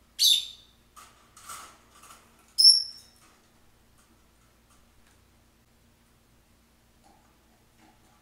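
Rosy-faced lovebird giving two loud, shrill calls, the second about two and a half seconds after the first.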